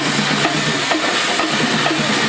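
Loud, steady drumming with a driving beat.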